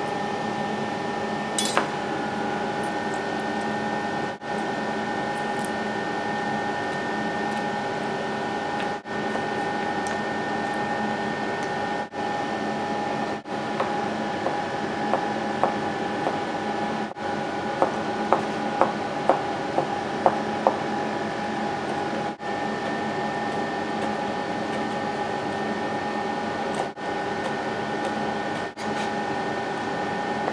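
A kitchen knife cutting squid into thin strips on a plastic cutting board: a sharp clatter about two seconds in, then a run of about a dozen light taps on the board in the second half. A steady machine hum with several fixed tones runs underneath throughout.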